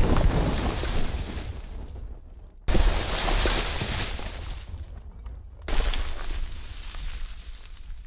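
Earthquake ground-cracking sound effect: a sudden low rumble with a hissing crack that fades away, sounding three times in a row, starting again about three seconds in and about six seconds in.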